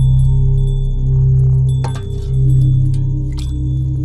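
Film background score: a deep electronic drone that swells and fades about every second, with thin steady high tones held above it. Two short clicks come in the second half.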